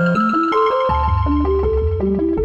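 Korg Minilogue analogue synthesizer playing its 'K>Frajile' patch: a quick run of short pitched notes, about five a second, stepping up and down over low held bass notes, with a brighter attack about half a second in.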